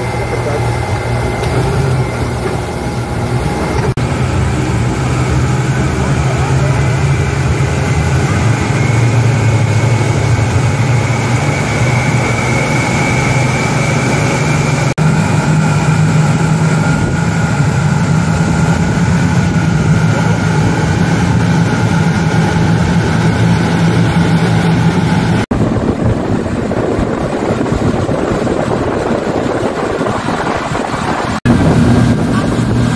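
A bank of six Yamaha 250 hp outboard motors running together at cruising speed, a steady loud drone with a higher whine over it. The drone sits a little higher in pitch from about halfway through.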